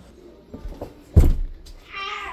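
A single loud thump about a second in, then, near the end, the start of a long wavering high-pitched call.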